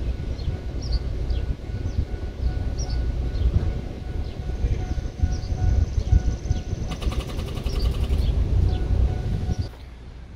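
A Pontiac Grand Prix's engine turning over on the starter without catching, a rhythmic churning with a faint whine that stops just before the end; the car fails to start and is dead. Birds chirp in the background.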